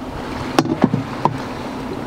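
Steady wind and sea noise, with a few light knocks about half a second, one second and a second and a quarter in.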